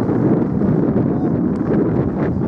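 Wind buffeting the camera's microphone: a loud, steady, low rumble.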